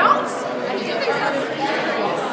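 Crowd chatter: many people talking over each other in a large indoor room, with one voice briefly louder right at the start.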